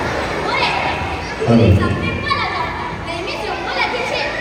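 Children's voices speaking and calling out, picked up in a large hall.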